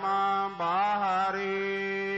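Gurbani kirtan: a singer holds long, slowly bending notes over a steady harmonium drone, with a short break about half a second in.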